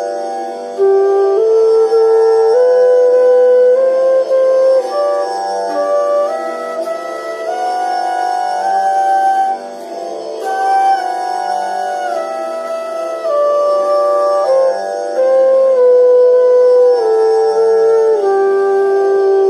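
Bamboo bansuri flute playing the fourth alankar, a paired-note scale exercise, slowly in held notes: the notes climb step by step for about nine seconds, then step back down.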